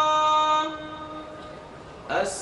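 An imam's chanted voice holding one long steady note of a prayer phrase over the mosque's loudspeakers. The note ends about two-thirds of a second in and dies away in the echo of the hall.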